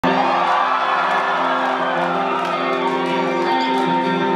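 Live rock band's electric guitars playing sustained, ringing chords through a venue PA at the start of a song, with a crowd cheering and whooping underneath.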